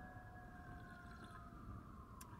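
Faint distant emergency-vehicle siren, a single slow wail that holds its pitch and then gradually falls, over a low rumble of traffic.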